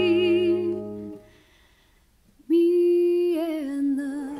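Musical-theatre song: a solo singer holds a note with vibrato over a sustained band chord, and the whole band stops about a second in. After a moment of near silence the voice comes back alone, unaccompanied, holding a note and then stepping down in pitch on the song's final line.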